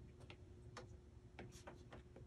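Near silence with faint, irregular ticks from a stylus tip tapping on a tablet's glass screen while writing, about half a dozen in two seconds.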